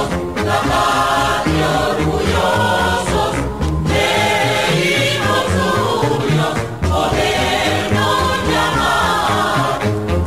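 Choral song with instrumental backing, heard as broadcast on FM radio.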